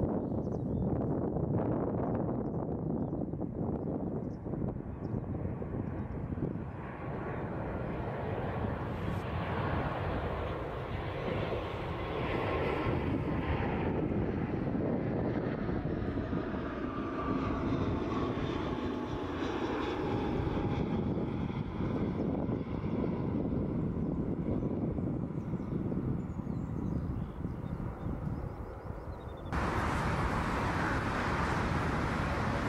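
Distant, steady rumble of a four-engine Boeing 747's jet engines cruising high overhead, heard from the ground. The sound changes abruptly just before the end.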